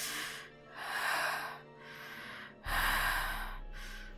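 A person breathing heavily: three long breaths, each about a second, with short pauses between, over soft background music.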